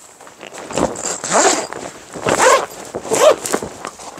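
Tent zipper pulled in about four long strokes as a clear vinyl wall panel is zipped onto the front of a shelter tent.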